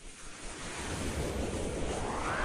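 Whoosh sound effect for an animated logo: a rushing noise that builds over the first second, then sweeps upward in pitch near the end.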